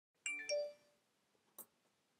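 A two-note ding-dong chime, the notes close together, ringing briefly and fading out, followed by a faint click.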